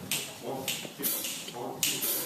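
Sharp clicks tapped out evenly, a little under two a second, counting off the tempo just before a small jazz band comes in.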